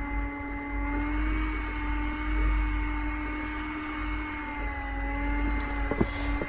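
A small motor running: a steady whirring hum, with a few held tones over a low rumble.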